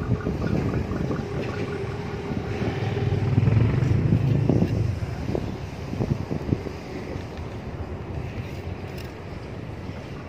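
Low, steady outdoor rumble, swelling about three to five seconds in, with a few short, sharp knocks scattered through the second half.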